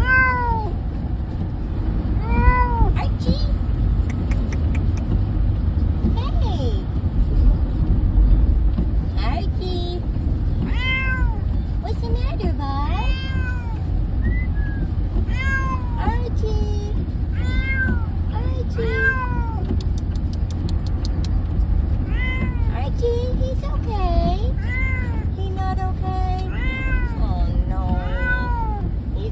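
Orange tabby cat meowing over and over inside a pet carrier, each meow rising and then falling in pitch, complaining to be let out. A steady low rumble of car road noise runs underneath.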